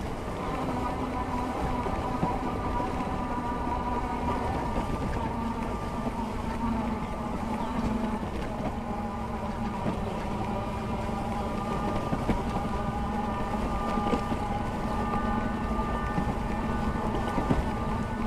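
A 750-watt, 48-volt fat-tire e-bike being ridden over grass at about 11 to 15 mph: a steady hum with a higher whine from the motor and 26x4-inch tyres over a rush of wind noise.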